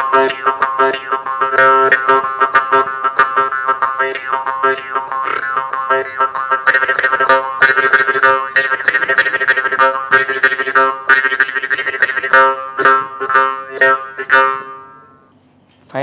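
Jaw harp plucked in a fast rhythmic pattern over its steady twanging drone, the brightness of the tone shifting as the mouth shape changes. The playing stops and rings away about a second before the end.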